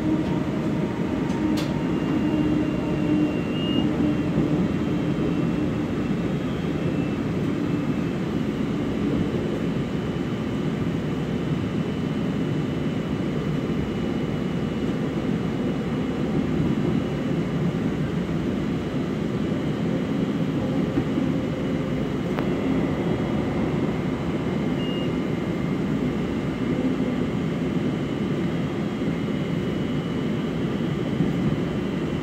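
Light rail car running along the track, heard from inside the car: a steady rumble of wheels on rails with faint whining tones over it. There is a single short click about a second and a half in.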